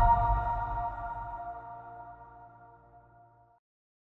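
Closing chord of an electronic logo jingle: several steady held tones ringing out and fading away evenly over about three seconds.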